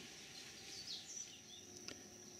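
Faint outdoor ambience with a few short, high bird chirps and a thin, steady high tone.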